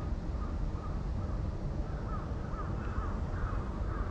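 Birds calling in a quick series of short chirps, busiest from about two to three and a half seconds in, over a steady low rumble.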